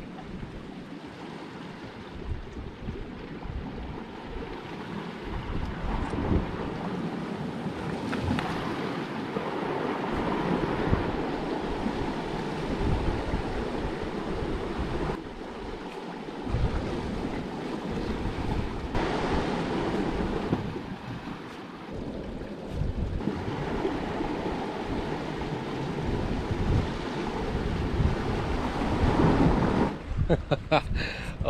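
Sea surf washing over coastal rocks, swelling and easing every few seconds, with gusts of wind buffeting the microphone.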